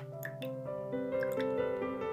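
Background music of sustained keyboard-like notes, with a few wet drips and plops of liquid falling from an upturned tin can into a bowl.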